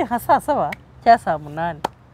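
Speech: a woman talking, with a short, sharp click just before the end.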